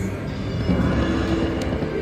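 Video slot machine playing its free-games bonus music and spin sound effects: a steady run of electronic tones while the bonus reels spin.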